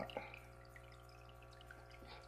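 Faint trickle and splash of water falling from a Tetra Whisper PF10 hang-on-back aquarium filter's outflow into the tank water, over a low steady hum.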